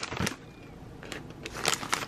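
Rustling and a few light clicks of packaging and containers being handled and set into a plastic bucket, with the sharper clicks near the end.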